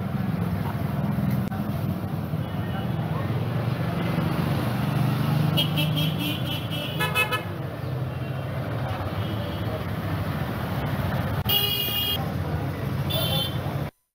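Street traffic: vehicle engines give a steady low rumble, while vehicle horns toot. A quick run of short toots comes around the middle, a longer honk about three seconds before the end, and one more short toot just after it.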